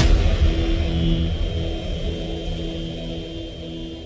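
A rumbling vehicle-engine sound effect that starts abruptly, loudest at the start, and slowly fades away.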